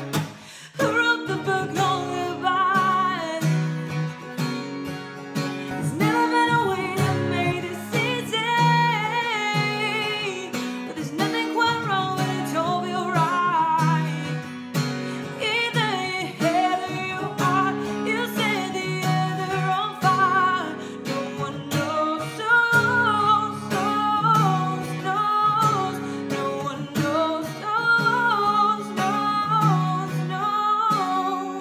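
A woman singing over a strummed acoustic guitar, the strumming keeping a steady rhythm beneath her melody.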